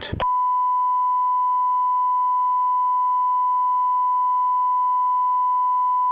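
Broadcast line-up tone: a single steady pure beep that starts a moment in and holds unchanged. It is the programme signal sent while the committee feed is suspended.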